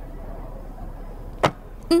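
A single sharp click about one and a half seconds in, over a low steady room hum.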